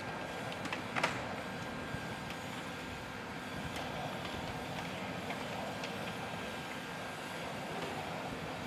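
Steady whirring machinery noise in an aircraft hangar, with scattered light clicks and footsteps and a sharper clatter about a second in.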